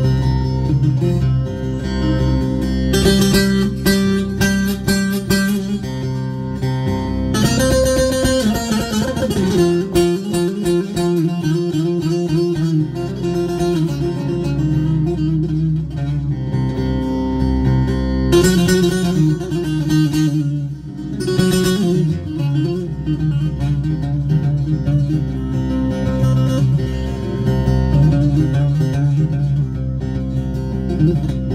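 Bağlama (Turkish long-necked saz) played solo: an instrumental melody of quickly picked and strummed notes over low ringing strings, with several denser flurries of fast strokes.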